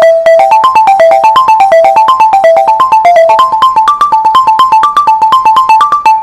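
Balafon, a wooden-keyed xylophone with gourd resonators, played with mallets in fast runs of struck notes that wander up and down in a repeating melodic pattern, after a rapid repeated note on a single pitch at the start.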